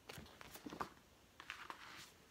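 A few faint rustles and soft taps of a picture book's paper page being turned and handled.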